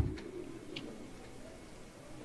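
A pause in a man's amplified speech. The echo of his last word fades over about half a second, leaving a faint steady background hum with a couple of soft ticks.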